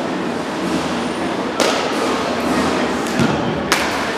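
A baseball bat striking a pitched ball with a sharp crack near the end, with another hard knock about a second and a half in, over the echoing hubbub of an indoor batting cage.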